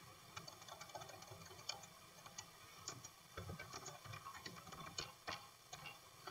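Faint typing on a computer keyboard: irregular light key clicks, with a sharper click about five seconds in.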